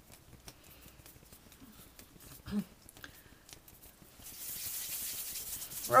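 Hands working a lump of sugar paste: faint scattered ticks of fingers kneading the paste, a short low sound midway, then, about four seconds in, a steady hiss of palms rubbing together as the paste is rolled into a ball between the hands.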